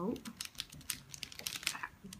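Mirror cube (a Rubik's-cube variant) being turned quickly by hand: a rapid, irregular run of sharp clicks as its layers are twisted.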